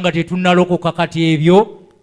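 Speech only: a man preaching, his voice breaking off shortly before the end.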